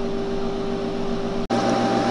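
Steady electrical hum with fan noise from powered-up bench electronics: power supplies running a vacuum-tube circuit. The sound breaks off for an instant about one and a half seconds in, then carries on.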